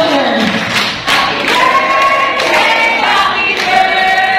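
Several voices singing together in long held notes.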